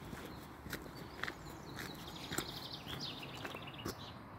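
Footsteps crunching on a loose gravel path at a walking pace, stopping near the end. From about two seconds in, a small songbird sings a fast high trill.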